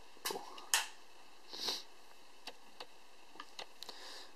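Small handling noises from jumper wires and alligator clips on a solderless breadboard: one sharp click a little under a second in, then a scatter of faint ticks. A brief breath or sniff comes about a second and a half in.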